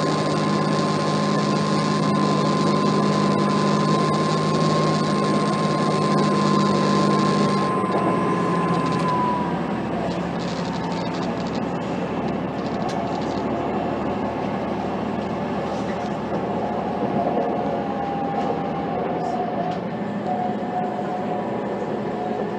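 Inside a Class 185 diesel multiple unit on the move: the steady drone of its Cummins QSK19 diesel engine and drivetrain with a high whine over the rumble of the wheels. About eight seconds in, the drone and then the whine drop away, leaving the even rumble of the train running on the track.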